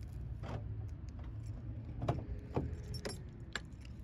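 Car keys jingling and clicking a few times as they are fished out, over a low steady vehicle rumble.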